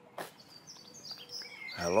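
Small birds chirping and tweeting outdoors over a faint background hum, with a sharp click just after the start. A man's voice begins near the end.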